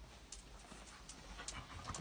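A dog's faint, quick breaths, a string of short puffs a few tenths of a second apart, as it works a room for an anise-scented scent-work hide.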